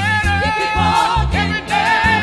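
Live gospel praise song: several singers with vibrato over electronic keyboard accompaniment and a low, moving bass line.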